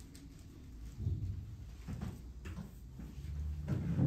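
Quiet, irregular low bumps and rustling from a handheld microphone being handled while Bible pages are turned, the loudest bump just before the end.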